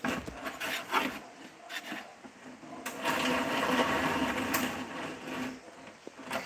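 Handling noise from a phone held in the hand: rubbing and scraping on its microphone with a few knocks, then a steady rubbing stretch of about two and a half seconds from about three seconds in.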